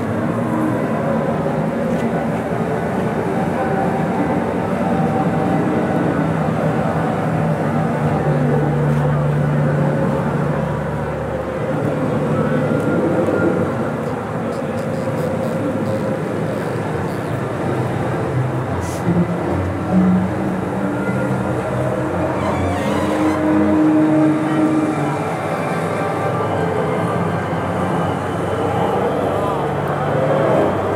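Chatter of a street crowd over the steady running of a vehicle engine, the motor moving a large flower-parade float along.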